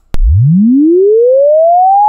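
A computer-generated linear chirp: a pure sine tone that starts with a click and rises smoothly and steadily in pitch from a low hum to about 880 Hz, its frequency climbing at an even rate over two seconds.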